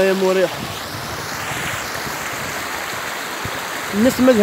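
Shallow river running over rocks: a steady, even rushing of water.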